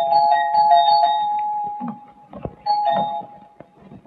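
Doorbell ringing: two steady chime tones sounding together, held for about two seconds, then rung again briefly a little before three seconds in.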